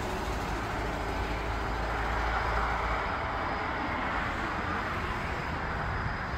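Outdoor ambient noise: a steady rushing hiss with a low rumble underneath, swelling a little in the middle.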